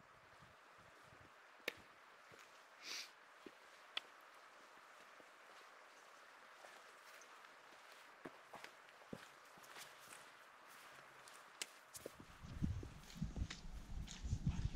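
Faint footsteps and scattered sharp clicks of trekking poles striking rock and turf as two hikers walk past on a grassy ridge, over a quiet hiss. A low rumble on the microphone comes in near the end.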